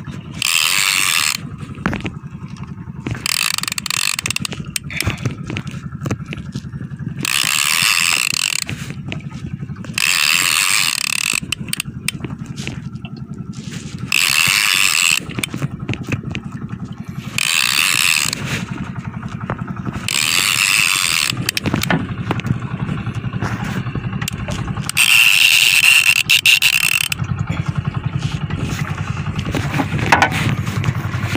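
Shimano Torium conventional baitcasting reel being cranked to wind in a hooked fish, its gears giving a fast, steady ratcheting tick. The ticking is broken every few seconds by bursts of about a second of louder, higher hissing, the loudest near the end.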